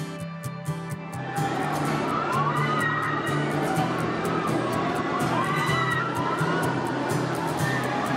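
Background music, joined about a second in by a roller coaster train rushing along its track while the riders scream in rising and falling shrieks. The music carries on underneath.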